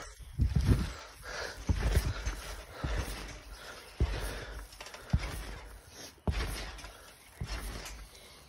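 Backyard trampoline mat taking jumpers' landings: a dull low thud with each bounce, coming about once a second.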